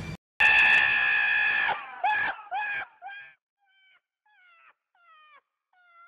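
Donkey braying: one long, loud call, then a run of shorter calls, each bending in pitch, that grow fainter.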